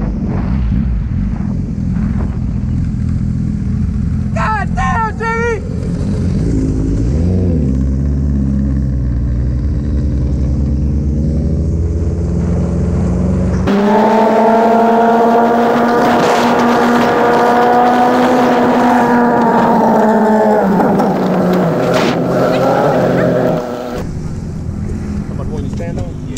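Kawasaki ZX-14R's inline-four engine running at a steady, easy pace under the rider, with wind rush on the camera. About halfway the deep rumble drops out abruptly, and a steady, slightly rising and falling engine tone carries on for about seven seconds before the rumble returns.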